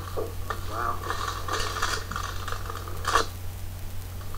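Plastic clicks and rattles from a 1999 Nerf Ball Blaster being handled just after a shot, with one louder sharp clack about three seconds in.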